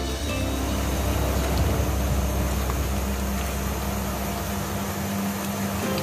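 A steady low rumble, with a pan of shrimp and bitter melon in simmering sauce being stirred with a silicone spatula, under soft background music.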